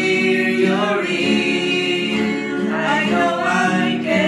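Several voices singing long held notes in harmony over acoustic guitar, moving to a new note about a second in and again near three seconds: a worship song.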